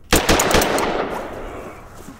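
A quick burst of rapid gunfire, several shots in the first half second, followed by a long echoing tail that fades away over about a second.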